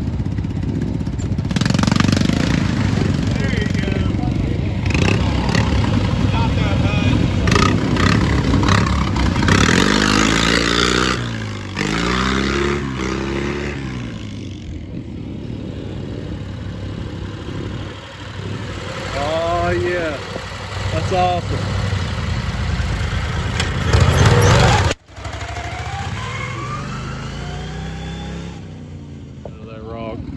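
Small off-road vehicle engines running and revving through mud, the pitch rising and falling as the throttle changes. Voices are heard now and then.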